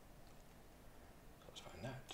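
Near silence: room tone, with a brief faint murmur from a voice near the end.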